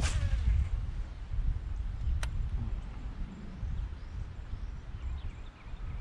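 Wind buffeting the microphone outdoors, a low uneven rumble, with a sharp click at the start and another about two seconds in.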